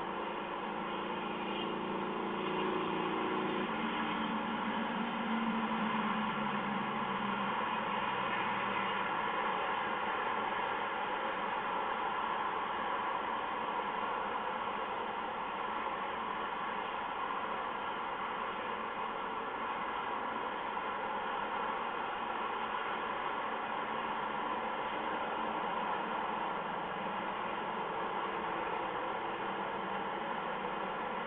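Steady hiss and static from a live-cam microphone, with a low drone that fades out about eight seconds in.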